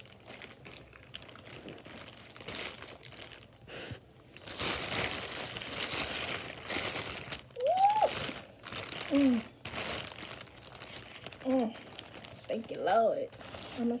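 A crinkling, crunching rustle as takeout crab legs and seafood are handled and eaten, loudest for a few seconds through the middle. Several short hummed 'mm' sounds of enjoyment follow in the second half.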